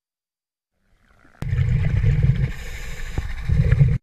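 Underwater noise picked up by a diver's camera: a loud low rumble that starts suddenly about a second and a half in, eases off in the middle and swells again near the end.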